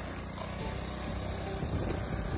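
Motorcycle engine running as the bike is ridden along, with wind rumbling on the microphone, stronger near the end.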